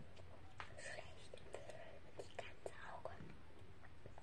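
Soft whispering, with several faint clicks among the whispered sounds.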